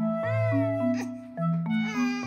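A three-month-old baby crying from tiredness: one drawn-out wail about a quarter second in that arches up and then falls in pitch. Background music with mallet-like notes and a bass line plays throughout.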